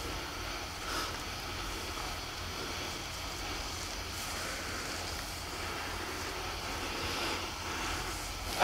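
Steady, even background noise with a constant low hum and no speech: the quiet ambient sound bed of a film scene.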